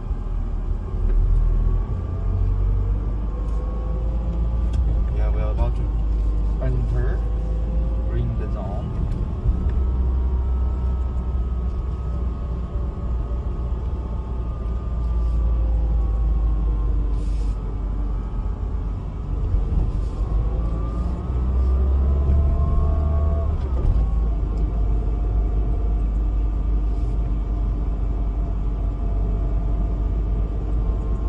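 A car's engine and road rumble heard from inside the cabin while driving, the engine's pitch slowly rising and falling as the car speeds up and eases off.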